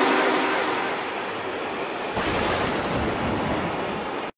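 Freight train of tank wagons rolling past: a steady rushing rail noise that slowly fades, swelling briefly about halfway through.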